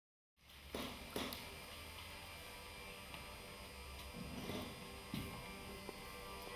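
Quiet ambience of a theatre stage: a steady low hum with a few soft knocks and clicks scattered through it. The sound cuts in abruptly just after the start.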